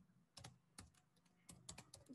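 Faint typing on a computer keyboard: a few irregular keystrokes, with a quick run of them near the end, as an email address is typed into a login field.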